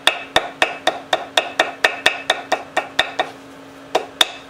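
Small hammer tapping gasket material against the edge of an engine part to beat out a gasket, light even strikes about four a second with a short metallic ring. The taps stop a little past three seconds in, with one more near the end.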